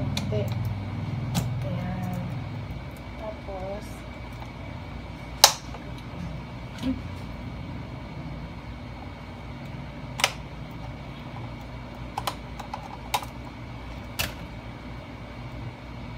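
Scattered sharp plastic clicks and snaps as a thin tool pries around a gaming headset's plastic ear cup to unclip the ear pad. There are about half a dozen clicks, and the loudest comes about five seconds in.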